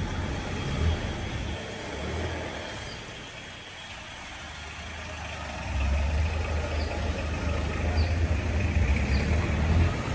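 Pressure washer hosing the underside of a raised car, a steady hiss of spray over a low machine hum that grows louder about six seconds in.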